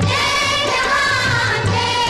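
A Hindi film song: a voice sings a long line that rises and falls over the band's accompaniment, with a pulsing low beat underneath.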